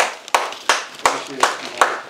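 One person clapping hands in a steady rhythm, about three claps a second, six claps in all.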